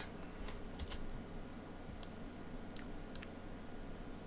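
About six faint, sharp clicks scattered over a few seconds, from working a computer's mouse and keys, over a low steady hum.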